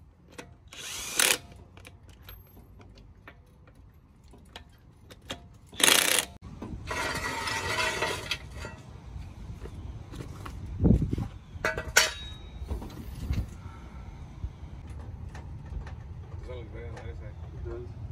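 Cordless impact wrench hammering a truck wheel's lug nuts tight, in short bursts about a second in and around six seconds, then a longer run of about two seconds. Past the middle comes a low thump and then a sharp click.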